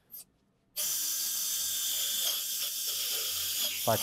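Powered surgical drill driving a 7 mm cannulated reamer over a guide wire through the fibular head. A steady high-pitched whir with hiss starts about three-quarters of a second in.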